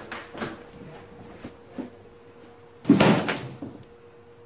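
A few light knocks in the first two seconds, then a loud bang about three seconds in that dies away within a second.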